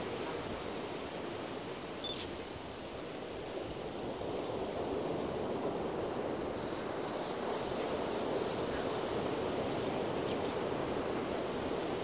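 Steady wash of ocean surf and wind, growing slightly louder partway through, with a faint click about two seconds in.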